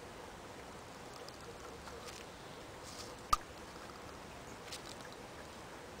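Faint steady background hiss, with one sharp click a little past halfway as the plastic syringe tip knocks against the small glass while water is drawn up into it.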